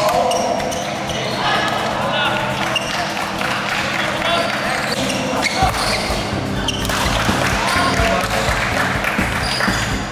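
Badminton doubles rally: a string of sharp racket hits on the shuttlecock and players' footwork on the court, over the chatter of spectators in a big, echoing hall. A low rumble joins about halfway through.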